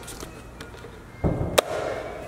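A door being handled and opened: a dull low thump a little over a second in, then one sharp metallic click of the knob latch.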